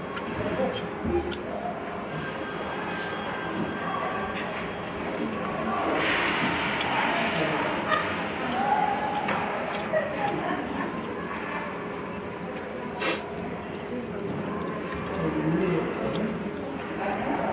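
Ice hockey arena sound during play: a steady murmur of distant voices and calls over the rink, with one sharp crack from the play on the ice about three-quarters of the way through.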